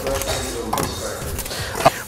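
Faint, indistinct voices over a noisy rustling background, with a single sharp click near the end.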